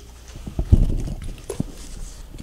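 Thumps and knocks of footsteps on a wooden floor and a handheld camera being turned: a cluster of heavy thumps starting about half a second in, then a sharper knock.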